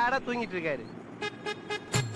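A wavering, drawn-out voice that sounds sung fades out in the first second. Just past a second in, a steady, buzzy horn-like tone starts as music begins.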